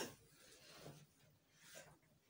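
Near silence: room tone, with a brief faint sound right at the start and a couple of soft, faint sounds later on.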